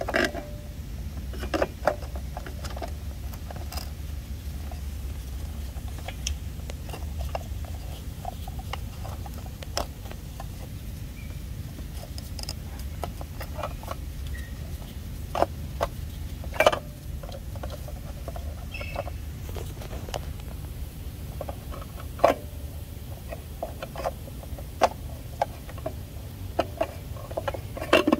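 Scattered light clicks, taps and scrapes of hands handling plastic engine-bay parts and hoses while a new oil filter is being fitted, over a steady low hum. A few sharper knocks stand out about two-thirds of the way in.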